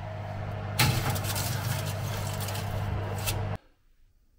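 Electric oven running with a steady motor hum. About a second in a louder rushing, rattling noise joins it as a foil-lined metal tray is handled at the open oven, with a click near the end; it all cuts off suddenly.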